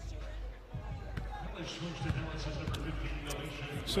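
A basketball bouncing on the hardwood court a few times, heard as sharp knocks over a low arena hum and faint voices in the background.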